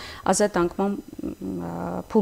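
Speech: a woman talking, ending on one drawn-out, held vowel near the end.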